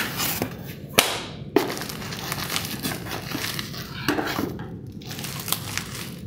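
Corrugated cardboard shipping box being opened by hand: flaps rubbing and scraping, with several sharp snaps of the cardboard, the loudest about a second in.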